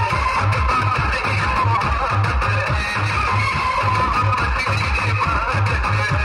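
Loud dance music playing through a large outdoor DJ speaker stack, with a heavy, regularly pulsing bass beat.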